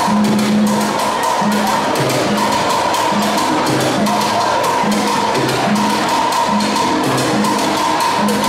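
Live band playing an instrumental passage of plena dance music: a steady, fast percussion groove on congas and timbales under a repeating electric bass line and keyboard chords.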